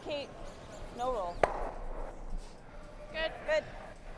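Curlers on the ice shouting short, high-pitched sweeping calls, about four in all, as the stone slides down the sheet. A single sharp click comes about a second and a half in.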